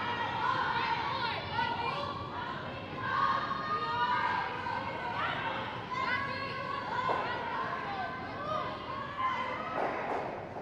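Curlers shouting sweeping calls in high voices while brooms brush the ice ahead of a sliding granite curling stone. Just before the end comes a single sharp knock as the stone strikes another stone.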